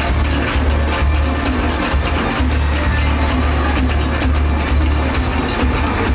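A fusion Korean traditional band playing an instrumental passage of a K-pop dance cover. It has a heavy pulsing electronic bass line and a steady beat, with janggu hourglass drums and gayageum zithers in the band.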